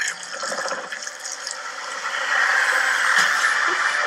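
Movie-trailer sound effect played back from a screen: a rushing, water-like noise that swells louder about halfway through.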